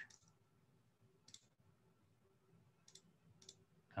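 Faint computer mouse clicks over near silence: one about a second in and two close together near the end.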